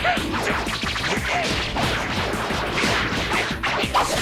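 Animated fight sound effects: a rapid flurry of whooshes and hard hits over action music, with a man laughing near the end.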